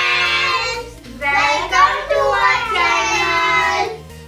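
Children and a woman calling out together in unison in long, drawn-out sing-song phrases, twice, over light background music.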